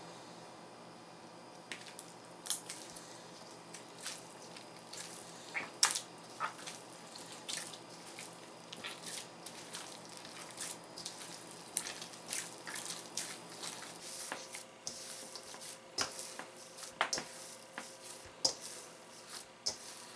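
Hands kneading a soft, oily flour dough in a stainless steel bowl: faint, irregular wet squishing and sticky smacks, the oil just worked into the dough.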